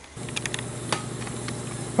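A steady hiss of workshop background noise with a few light clicks in the first second.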